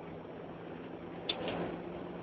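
Steady car cabin noise: a low engine hum under a wash of road and interior noise, with one light click a little past halfway.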